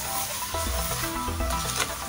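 Sugar with a little milk sizzling and bubbling in a hot nonstick karahi as it starts to melt, under steady background music.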